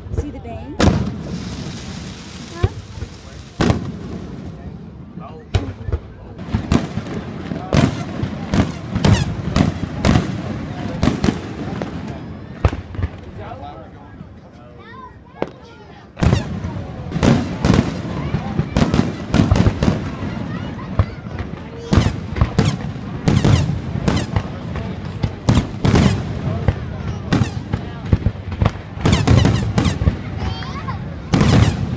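Aerial fireworks display: many shells bursting in quick succession, with crackling in the first few seconds, a quieter spell in the middle, then a dense run of bangs through the second half. People's voices underneath.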